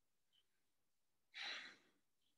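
A person's single short breath out, a sigh close to the microphone, lasting about half a second in the second half.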